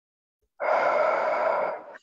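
A person's long, audible breath, starting about half a second in and lasting just over a second.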